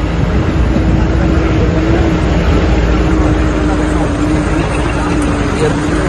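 4x4 jeep running steadily while climbing a rough, stony mountain jeep track, heard from on board: a steady engine hum over a heavy low rumble.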